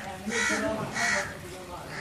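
A bird giving short harsh cawing calls, three in a row about half a second apart, with faint voices underneath.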